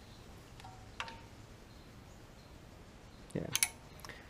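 A single light metallic clink about a second in, with a brief ringing tone after it, preceded by a softer ping: a metal socket knocking against the engine's metal hardware while the pickup tube brace bolt is snugged by hand.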